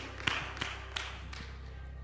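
A few last scattered claps from the congregation as the applause dies away, about four sharp taps in the first second and a half, over a steady low hum.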